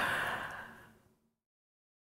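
A person's short, breathy exhale, like a sigh, fading out within about a second.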